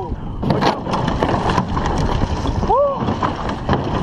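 Water splashing and churning close beside a wooden canoe over a steady rush of wind and water noise, with scattered sharp knocks. A man gives one short rising-and-falling shout about three seconds in.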